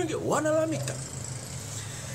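A man's voice speaking for under a second, then a steady low hum with no words.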